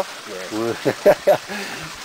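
Men's voices talking briefly, over a faint, steady background hiss.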